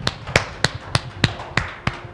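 A knife chopping on a cutting board: a run of sharp, even taps, about three a second.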